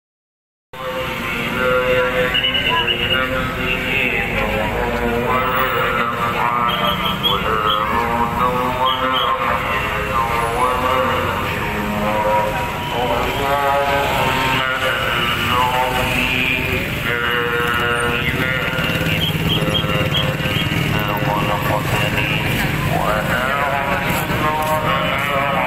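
Busy street crowd: many overlapping voices with motorcycle engines running. The sound starts a little under a second in.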